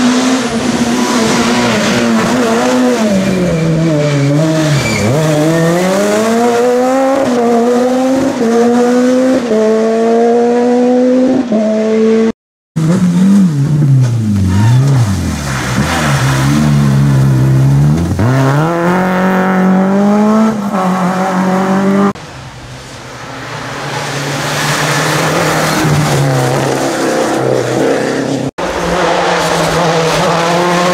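Rally car engines driven hard past the roadside, several cars one after another with abrupt cuts between them. The first car's revs drop and then climb again in quick steps as it shifts up through several gears. After a cut a second car revs up and down through a bend, and after another cut a car approaches, growing louder.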